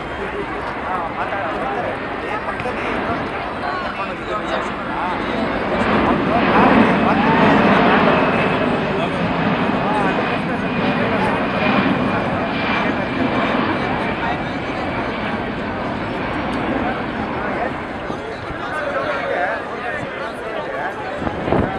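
Jet noise from a Boeing C-17 Globemaster III's four turbofan engines during a low flypast, a broad rush that swells to its loudest about six to nine seconds in, with a thin high whine through the middle; voices are heard underneath.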